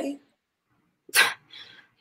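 A person's short, sharp breathy exhale, like a huff or scoff, about a second in, followed by a fainter breath.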